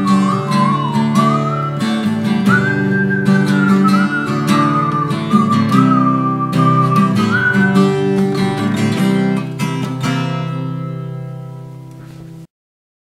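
Acoustic guitar strumming the closing bars of a song, with a single high, wavering melody line carried over it for most of the time. The strumming stops about nine seconds in and the last chord rings and dies away.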